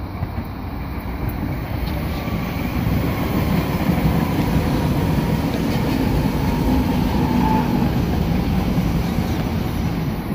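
SEPTA Silverliner IV electric commuter train passing close by, its wheels and running gear rumbling on the rails. The rumble grows louder about three seconds in as the cars go by.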